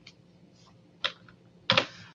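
Two key presses on a computer keyboard, one about a second in and a louder one near the end.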